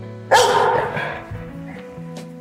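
A pit bull-type dog barks once, loudly, about a third of a second in, the bark tailing off within about a second.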